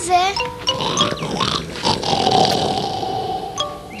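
A bear's snore sound effect: one long snore starting about a second in and lasting a little over two seconds, over children's background music.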